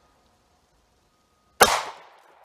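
A single shot from a Taurus GX4 9mm pistol with a 3.1-inch barrel, firing a 115 gr standard-pressure Hornady Critical Defense round, about a second and a half in, with a short echo trailing off after it.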